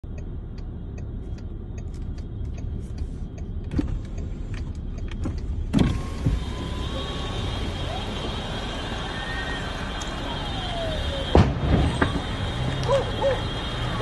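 Inside a car: a low engine rumble with the turn-signal indicator ticking about three times a second. About six seconds in, the car's power window is lowered and the street outside comes in, with a steady high-pitched tone and a few sharp thumps near the end.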